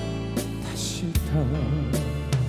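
A male singer performing a slow ballad live with accompaniment. For about the first second only the accompaniment's held notes sound. After a soft drum hit he comes back in, holding a note with a wide vibrato.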